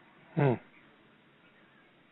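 A short spoken 'hmm' of acknowledgement, about half a second in, over faint line hiss.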